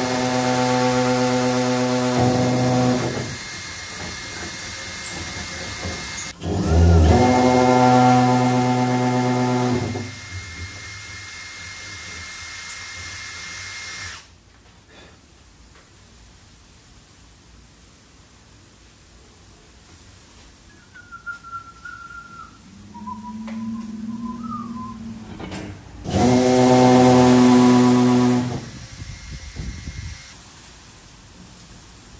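Cordless drill motor whining under load in bursts as it works into the carbon-fibre wing flap and hatch. There are two long runs in the first half, a short quieter wavering whine past the middle, and one more burst of a couple of seconds near the end.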